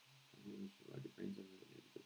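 Speech only: a man quietly mumbling, reading text aloud under his breath, his voice low and muffled.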